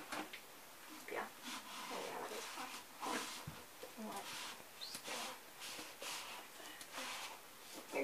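Hand dishwashing in a sink of soapy water: a cup scrubbed with a sponge mitt and hands swishing through the water, in irregular bursts of rubbing and splashing.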